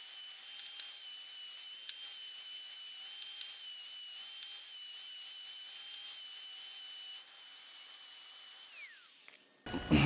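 Electric angle grinder with a coarse 36-grit wheel running with a steady high whine and hiss, grinding mill scale and rust off the end of a steel pipe down to bare metal. Near the end the motor's whine falls in pitch as it is switched off and spins down.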